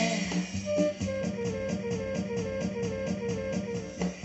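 Guitar-led music playing from a Denon DN-S1000 DJ CD player during an instrumental stretch, a short note repeating evenly about four times a second, with the player's echo effect switched on.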